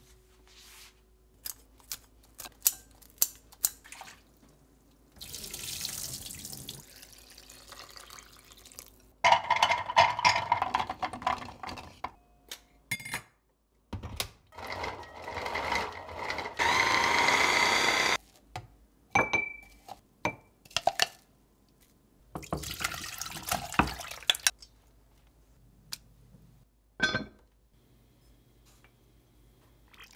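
Kitchen prep sounds in sequence. Kitchen scissors snip through shredded dried pollock in a run of short clicks, and a tap runs in several stretches. An electric chopper motor runs briefly and steadily, pressed down on garlic cloves, near the middle.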